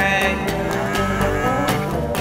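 Live rock band jamming: drums keep a steady beat under bass, guitar and keyboard, with a held note bending in pitch over the top near the start.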